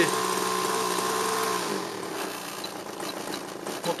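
Small methanol-fuelled glow engine of a model airplane running with a steady buzzing note, then dying away with a falling pitch about two seconds in: the engine stalls.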